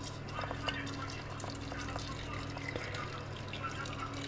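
Water pouring in a thin steady stream from an electric kettle into the metal strainer of a glass teapot, onto loose tea leaves.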